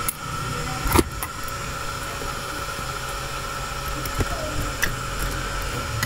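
A sharp click about a second in and a few lighter clicks, from the plastic case of a transistor radio being handled, over a steady low rumble and a faint steady whine.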